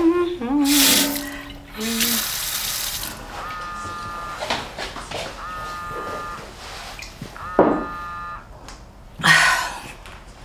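Water running from a kitchen sink tap for a couple of seconds, then a mobile phone ringtone ringing three times, each ring about a second long.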